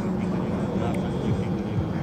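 A steady low rumble of outdoor background noise in a pause between a man's unaccompanied sung phrases.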